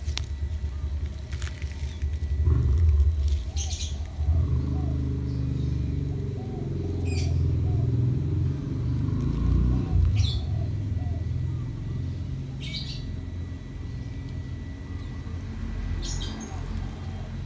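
A low, uneven rumble, with a few short high chirps, likely birds, about every three seconds.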